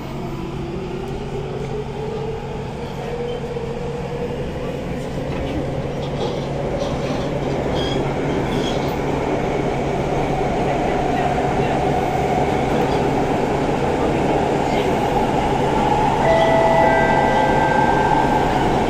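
Siemens C651 metro train accelerating away from a station, heard from inside the car: its traction inverters whine in several tones that rise in pitch over the first few seconds, then give way to steady running noise of wheels and motors that grows louder as the train gathers speed.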